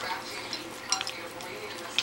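A dog eating dry kibble from a plate: faint crunching and small clicks of food and teeth against the plate, with one clearer click about a second in.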